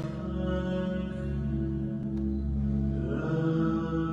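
Slow live music: long held notes over a steady low drone, with one note sliding upward about three seconds in.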